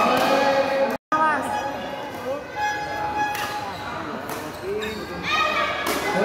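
Voices talking and calling out in a large hall, with a few short sharp knocks and thuds. The sound drops out completely for a moment about a second in.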